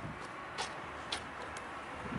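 Quiet outdoor background noise with four faint, short ticks about half a second apart.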